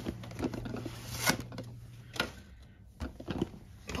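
A printed cardboard band sliding off a glossy cardboard advent calendar box, with scraping, rustling and a few soft knocks as the box is handled and set down.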